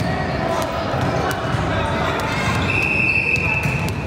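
Basketballs bouncing on a gym floor amid the chatter of spectators, with a steady high tone lasting about a second starting near the three-second mark.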